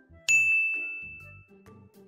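A single bright bell-like ding, likely an edited-in transition sound effect, struck about a quarter second in and fading out over about a second and a half.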